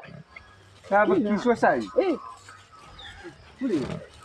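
Short voiced sounds in a phone field recording: a brief talk-like burst about a second in, two calls that rise and fall in pitch, and another short call near the end, over a faint low background hum.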